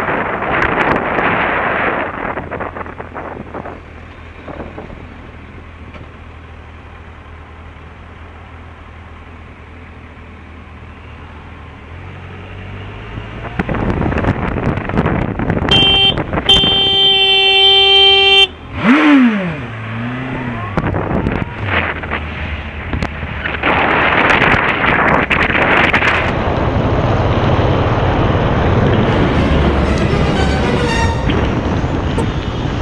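Motorcycle engine idling quietly in traffic, then pulling away with rising engine noise. About halfway through, a vehicle horn sounds one steady note for about two and a half seconds. After that the engine revs and wind rushes over the helmet microphone.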